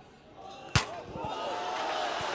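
A single sharp thump of the football about three-quarters of a second in, then a crowd cheering a goal, swelling and holding to the end.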